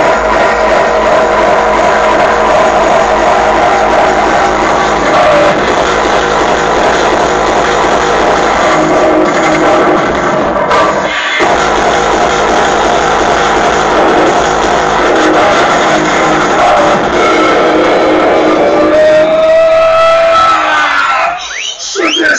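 Loud electronic dance music of the free-party tekno kind, played through a rave sound system. There is a short break about halfway through, and a synth line glides upward near the end.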